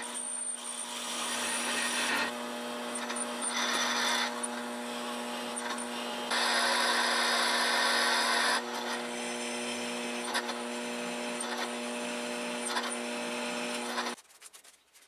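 Electric drill running at a steady speed while its bit bores into the end of a threaded metal axle, with a rough cutting noise that grows louder for a couple of seconds in the middle. This is the hole being drilled for an internal thread.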